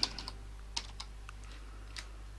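Typing on a computer keyboard: several separate keystrokes at uneven spacing.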